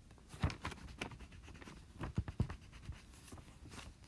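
Writing by hand on paper: irregular scratchy pen strokes and small taps, with a few louder knocks about two seconds in.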